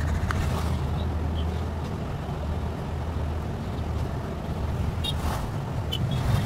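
A steady low hum with a constant background hiss, with a few faint brief higher sounds near the end.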